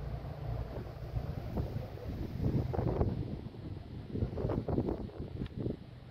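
Wind buffeting a phone microphone, a steady low rumble, with louder irregular noises about halfway through and again near the end.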